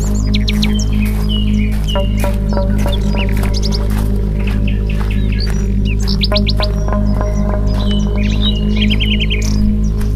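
Birds chirping, with many short high calls and quick trills of a few notes each, over background music with a steady low drone and pulse.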